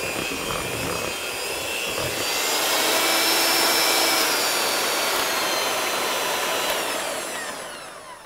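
Electric hand mixer running, its beaters whirring through thick cream cheese batter in a plastic bowl. The motor whine grows louder about two seconds in, then slides down in pitch and winds down near the end.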